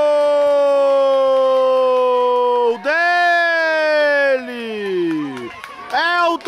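Commentator's long, drawn-out 'goool' goal shout: one held call lasting about three and a half seconds, sinking slightly in pitch, then a second shorter call that slides down and fades out.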